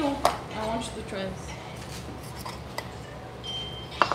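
Metal cutlery clinking and scraping against a plate as steak is served, in a few scattered light clicks.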